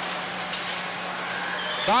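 Steady crowd noise in an ice hockey arena just after a fight on the ice: an even wash of sound with a faint low hum underneath.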